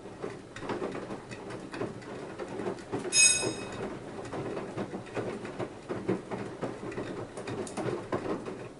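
Front-loading washing machine's drum turning in the wash phase, with soapy water and wet laundry sloshing and splashing unevenly inside. About three seconds in there is a brief high-pitched tone lasting about half a second.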